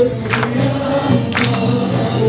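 Live choir and ensemble performing a Turkish folk song (türkü), with voices holding sung notes over a sharp beat about once a second.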